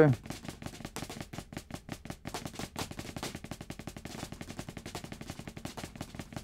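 Drumsticks played quickly and evenly on a rubber practice pad on a snare drum: a double-stroke roll alternating with hand-to-hand flams played with a loosened grip, part of a grip-tension exercise.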